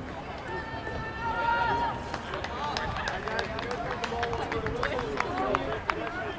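Shouting from soccer players and spectators across the field: one long held call from about half a second in to two seconds, then overlapping short shouts mixed with a scatter of sharp clicks.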